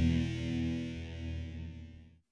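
Last chord of a rock song ringing out on distorted electric guitar, fading steadily away.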